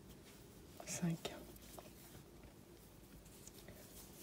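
Mostly quiet room tone, with a brief soft whispered vocal sound about a second in.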